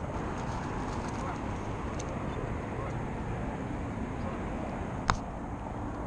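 Steady low rumble of freeway traffic from the overpasses above the pond, with one sharp click about five seconds in.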